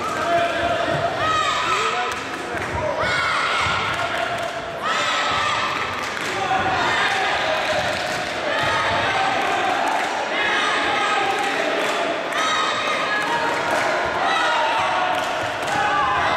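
Voices shouting across a large, echoing sports hall during a children's taekwondo bout, with repeated dull thuds from kicks and footwork on the mats.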